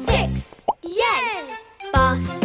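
The children's background music drops out for a cartoon sound effect: a short rising 'bloop' or plop, then a sliding vocal cry that falls in pitch. The music comes back right at the end.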